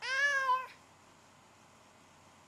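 A single cat meow, one short call of well under a second at the very start.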